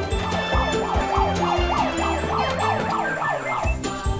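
Background music with a steady beat, over which a siren-like wail rises and falls rapidly, about three times a second, from about half a second in until near the end.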